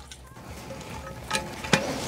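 Light handling noise from a toilet tank's flush mechanism: two short clicks a second and a half in, as the metal flapper chain and its hook are moved at the flush-lever arm, followed by a faint rustle.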